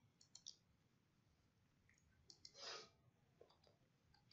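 Near silence, with a few faint computer mouse clicks spread through it and a short soft rustle or breath a little before the end.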